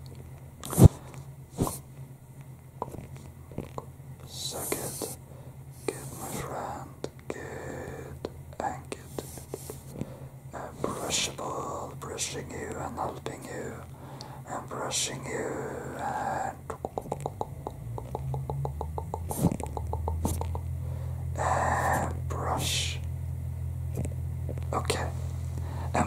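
Close-up ASMR brushing on the microphone: soft scratchy swishes and small clicks, with whisper-like sounds. Under it runs a steady low hum of noise from outside, which takes on a rapid pulsing about two-thirds of the way through and grows louder.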